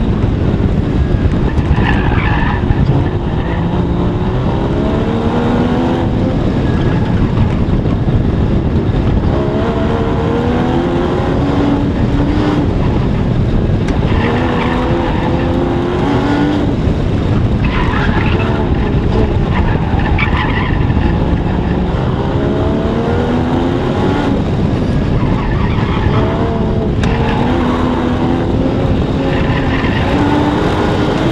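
Porsche sports car engine pulling hard at high revs, its pitch climbing and dropping again and again as the car accelerates and brakes between cones. Tires squeal in short bursts through the hard corners.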